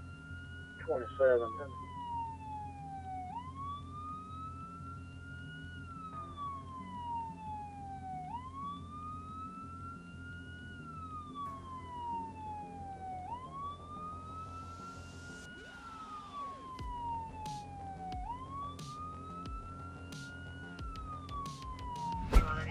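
Police siren wailing, rising and falling about every two and a half seconds, over a steady low engine hum. A short loud sound breaks in about a second in, and a few sharp clicks come near the end.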